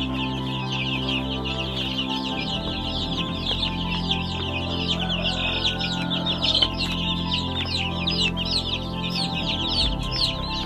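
A crowd of baby chicks peeping nonstop: many overlapping short, high, falling chirps from dozens of chicks at once.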